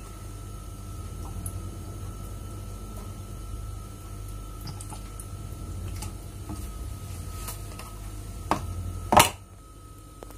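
Steady low hum with a faint high whine and a few faint clicks, then two sharp knocks about a second apart near the end, the second the loudest.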